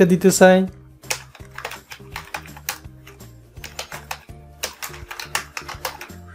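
Typing on a computer keyboard: a quick, irregular run of keystrokes, with soft background music underneath.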